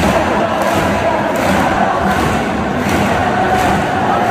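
Massed AC Milan ultras in a packed stadium stand singing a chant together, loud and unbroken, with drum thumps beneath.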